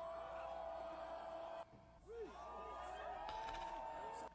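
Live concert audio of a crowd yelling and cheering over music, heard faintly, with held pitched tones and rising-and-falling voices. The sound drops briefly a little before the middle.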